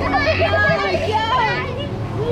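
Children laughing and squealing excitedly, high voices rising and falling, over a steady low rumble.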